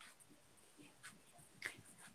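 Near silence, broken by a few faint short clicks about a second in and again near the end.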